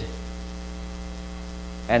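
Steady low electrical mains hum with a faint thin high whine above it. A man's voice starts again right at the end.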